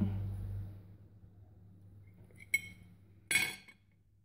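A knife clinking against a plate while a hard-boiled egg is cut: a sharp ringing clink about two and a half seconds in, then a short scraping clatter a second later.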